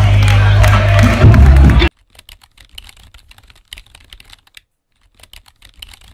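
Loud event audio, music with a heavy bass note and voices, cuts off suddenly about two seconds in. Then comes a quiet run of keyboard typing clicks, a sound effect for on-screen text being typed out letter by letter, with a brief pause in the middle.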